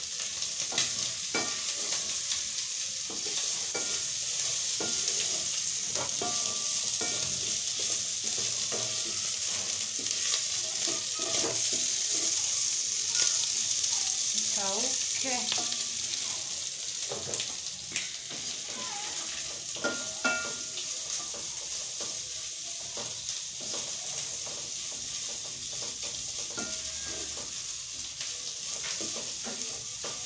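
Tripe and onions sizzling as they dry-fry in a pan on a gas burner, with a wooden spoon scraping and knocking against the pan as it is stirred. The sizzle eases a little after about halfway.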